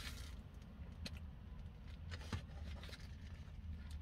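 Corn dog wrapper being unwrapped and crumpled in a car cabin: a few faint crinkles and ticks over a steady low hum.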